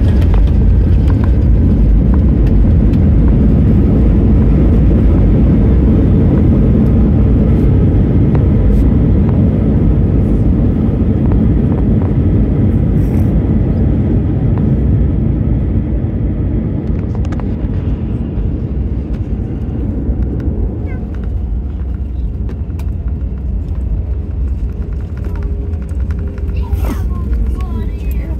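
Airbus A320 landing rollout heard from the cabin: a loud, steady low rumble of the engines and the wheels on the runway. It eases off gradually in the second half as the jet slows.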